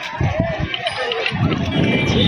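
Voices of people chattering outdoors. From about a second and a half in, a loud, irregular low rumble of wind buffeting the microphone sets in as the boat moves out onto the river.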